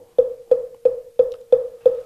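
Moktak (Korean Buddhist wooden fish) struck in an even beat: six knocks about three a second, each with a brief ringing tone, keeping time for liturgical chanting.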